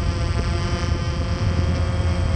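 Multirotor drone's electric motors and propellers running steadily while hovering, heard from on board: a steady hum made of several held tones.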